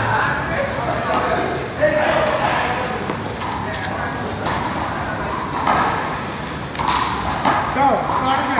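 A rubber ball being hit in a one-wall handball rally: a few sharp thuds of hand on ball and ball on the wall, about two seconds in and twice more near the end, over people talking.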